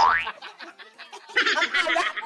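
A quick cartoon 'boing' sound effect that glides rapidly up in pitch at the very start, followed about a second and a half in by high-pitched laughing.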